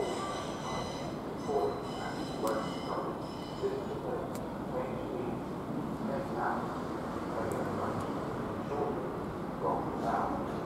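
Thameslink Class 700 electric multiple unit running along the track: a steady rumble with a high whine of several tones in the first few seconds that then fades.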